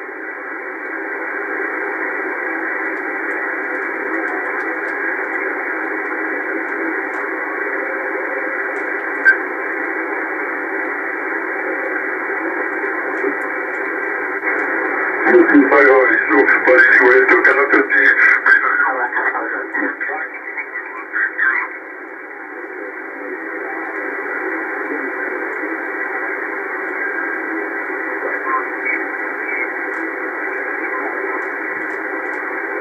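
Upper-sideband shortwave receiver audio from an SDRplay RSP tuned across the 10-metre amateur band: a steady, narrow-band hiss of band noise with faint signals in it. About halfway through, a station's voice comes in louder for roughly five seconds.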